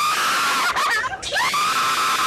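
A man screaming on an amusement ride: one long, high scream breaks off just under a second in, and a second one rises and holds steady from about a second and a half in.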